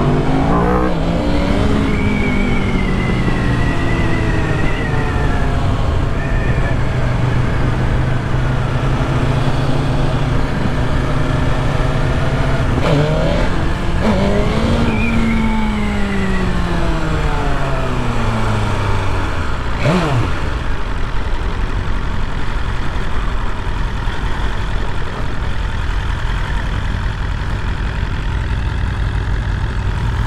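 BMW S1000RR's inline-four engine heard from the saddle under way: the revs climb about a second in and hold steady, climb again near the middle, then wind down and stay lower as the bike slows. A steady low rush of wind on the microphone runs underneath.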